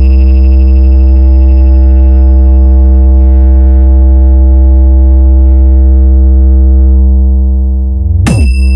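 One loud, deep synthesizer bass note held without a break, the sustained hard-bass tone of a DJ competition sound-check mix, with a thin high tone above it that fades out about halfway.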